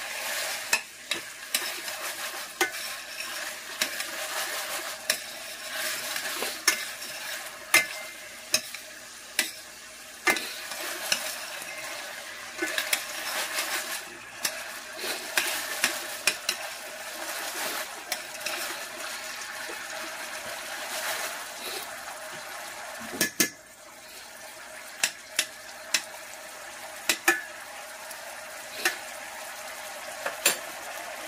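Shrimp scampi cooking in butter and garlic in a pan, a steady sizzle. Frequent sharp clicks of a utensil or pan sound through it, with a louder clatter about 23 seconds in.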